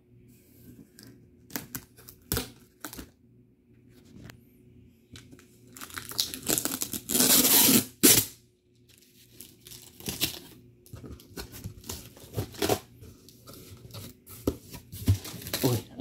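Clear packing tape being torn and peeled off a cardboard shipping box, with scattered clicks and rustling of the cardboard flaps as the box is opened. The loudest rip runs for about two seconds, some six to eight seconds in.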